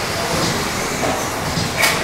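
Electric RC off-road buggies with 13.5-turn brushless motors running around an indoor track: a steady wash of motor and tyre noise, with one short sharp clack near the end.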